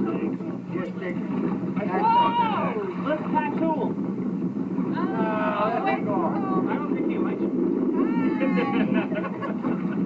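Indistinct voices that rise about two, five and eight seconds in, over a steady low hum.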